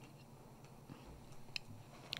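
Very quiet studio room tone with a few faint small clicks, the sharpest about a second and a half in.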